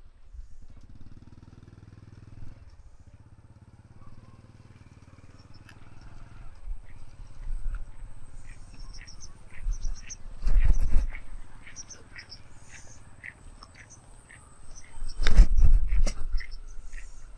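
Outdoor rural ambience: a low rumble with two loud low surges, one about ten seconds in and one near the end. Short high chirps of small birds are scattered through the second half.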